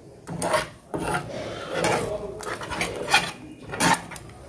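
A spatula scraping and stirring scrambling eggs in a nonstick frying pan, in a string of quick, uneven strokes. The loudest come near the end.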